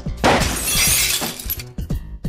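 Car rear window glass shattering, struck by a golf ball: a sudden crash about a quarter second in, breaking glass trailing off over about a second, over background music.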